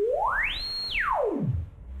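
A Make Noise modular synthesizer oscillator putting out a pure sine wave, swept by hand rising smoothly to a high whistle, held there briefly, then falling back down to a low tone.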